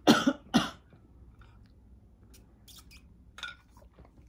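A woman coughing twice in quick succession near the start, clearing a tickle in her throat, then a few faint small sounds.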